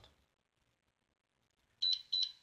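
Near silence, then near the end a short, high-pitched electronic beep from the smartphone as its screen is tapped.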